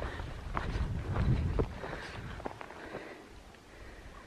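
Footsteps on a dirt hiking trail, a few short scuffs about half a second apart, over a low rumble on the microphone that eases off about halfway through.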